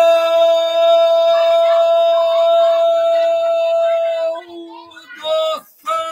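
Male football commentator's long drawn-out goal cry, "Gooool", held on one steady pitch for about four seconds and then broken off, followed by a few quick shouted syllables. It is the classic Brazilian goal call announcing that a goal has just been scored.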